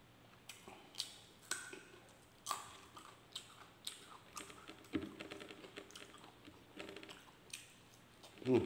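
A person chewing a mouthful of food close to the microphone, with irregular crunches every half second or so and a quick run of small crunches about five seconds in.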